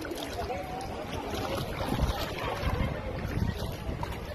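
Wind buffeting a phone's microphone in low gusts, loudest about halfway through and again near the end, over the steady rush of a shallow, rocky river.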